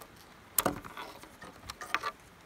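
A few light clicks and taps as a cable with a plastic Anderson Powerpole connector and the CPAP machine's power plug are handled, about half a second in, around one second and again near the end.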